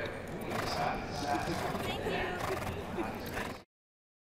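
Indistinct chatter of a small group gathered around a thoroughbred racehorse, with sounds from the horse mixed in. It cuts off abruptly to silence about three and a half seconds in.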